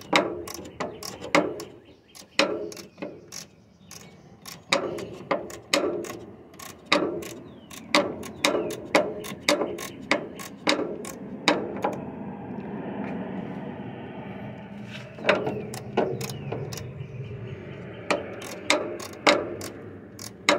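Socket ratchet clicking in repeated short strokes as a 9/16 in nut is run onto the bottom pivot shaft of an MGB's brake and clutch pedal assembly, with a smoother stretch about two thirds of the way through.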